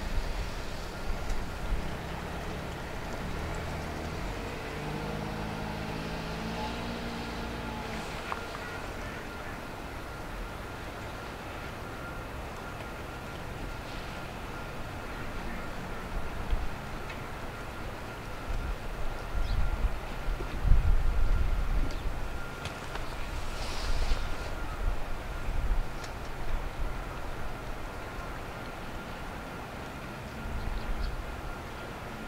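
AV-8B Harrier's Rolls-Royce Pegasus turbofan running at low power as the jet taxis, a steady high whine over a low rumble. The low rumble surges unevenly about two-thirds of the way through.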